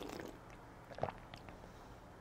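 Faint mouth sounds of white wine being swished and rolled around in the mouth while tasting it, with a few soft clicks about a second in.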